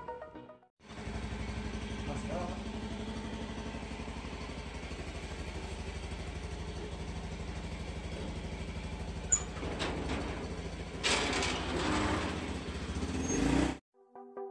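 Motorcycle engine idling with an even, fast pulsing beat. In the last few seconds it grows louder and noisier, rising just before the end as the bike moves off.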